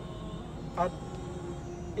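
Low steady rumble and hum of a car with its engine running, heard from inside the cabin, with one short spoken word about a second in.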